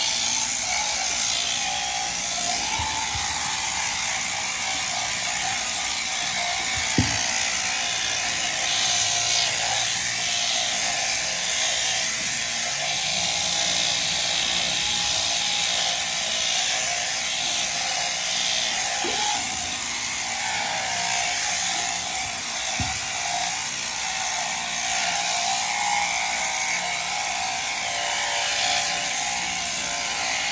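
Sheep-shearing handpiece running steadily, its cutter buzzing across the comb as it cuts through thick fleece, with a few brief knocks.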